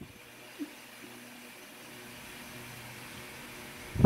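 Quiet room tone with a faint steady mechanical hum.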